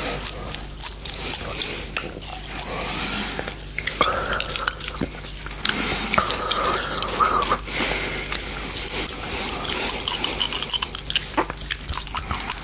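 Close-miked biting and chewing on a large, hard gummy candy: teeth clicking and wet mouth sounds. A wavering pitched sound runs through the middle few seconds.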